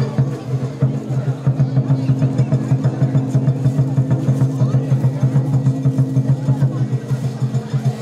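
A steady low hum that pulses rapidly, about four beats a second, with people talking over it.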